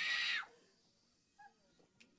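The held end of a man's loud shouted word, trailing off about half a second in, then near silence with one brief faint sound later on.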